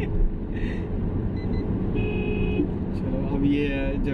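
Steady road and engine rumble inside a moving car's cabin, with men laughing and a voice near the end. A brief steady tone, like a horn, sounds about halfway through.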